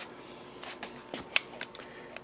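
Faint small plastic clicks and handling of an SCX Digital slot-car hand controller, with one sharper click a little past halfway.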